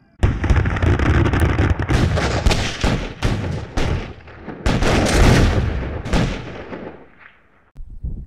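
Battle sound effect of dense gunfire with booming explosions, many sharp shots overlapping. It cuts in suddenly and fades away shortly before the end.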